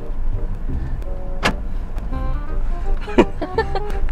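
Low steady rumble of a car's engine and road noise heard inside the cabin while driving, under background music of short held notes. A single sharp hit about a second and a half in.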